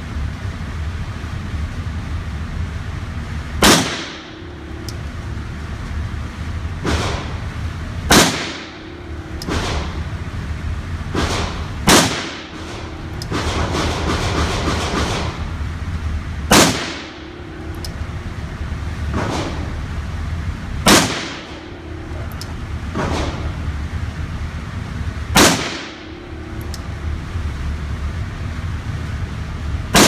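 A 1944 Tula-made Nagant M1895 revolver firing 7.62×38mmR rounds slowly and one at a time. There are six shots about four and a half seconds apart and a seventh right at the end. Each report is sharp and echoes in the indoor range, over a steady low hum.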